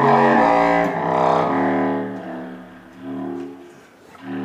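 A large low-pitched saxophone plays a phrase of held low notes with short breaks between them, loudest at the start and dying away near the end.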